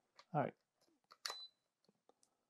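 A plug-in watt meter and its power cord handled: small plastic clicks, then a sharp click just over a second in with a short high electronic beep.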